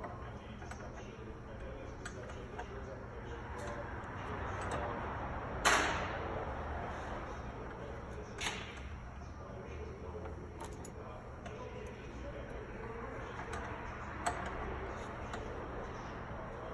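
Hand tools clicking and knocking on metal fittings in a car's engine bay during a brake master cylinder replacement. There are a few sharp clicks, the loudest about six seconds in and another about two and a half seconds later, over a steady low hum.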